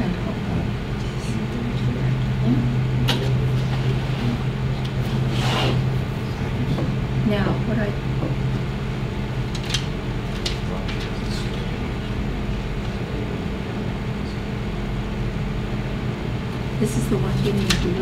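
A steady low hum fills the room throughout, with faint, low voices now and then and a few soft clicks from handling a book.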